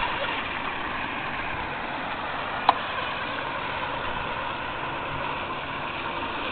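Steady, distant running of a micro RC outrigger hydroplane's 10 g brushless outrunner motor and 20 mm metal prop as the boat runs across the water, with a single short click about halfway through.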